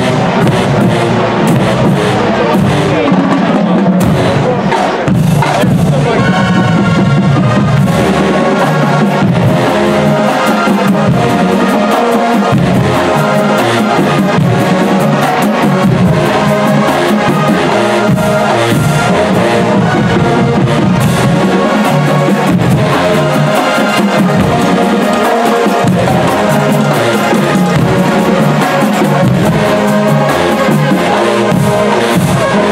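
A marching band plays a stand tune in the bleachers: loud brass with sousaphones over a driving drum line, continuing throughout.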